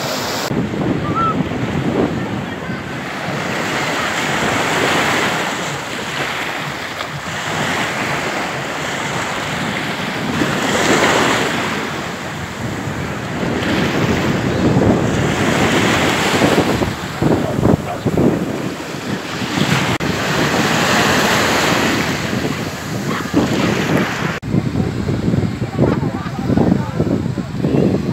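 Small sea waves breaking and washing up the shore, the surf sound swelling and falling back every few seconds, with wind buffeting the microphone.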